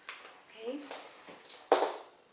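Faint, wordless vocal sounds from a woman, then a single short, loud rustling knock about three-quarters of the way through as she moves.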